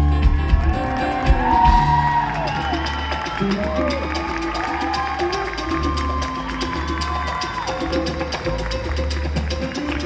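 A live band playing amplified music with a steady bass beat, with the audience cheering and whooping over it.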